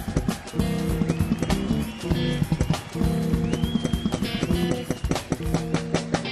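Jazz-fusion band playing live: drum kit, electric bass, keyboards and electric guitar, with a high lead note bending up in pitch and held several times over busy drumming.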